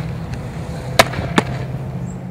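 Two sharp smacks of a softball during fielding drills, the first about a second in and the second just under half a second later, over a steady outdoor background hum.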